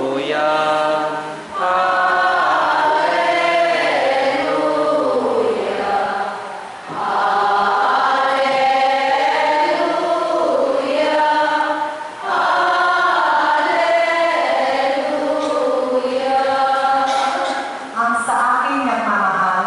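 A choir sings a slow liturgical chant in long, held phrases, pausing briefly for breath about every five seconds.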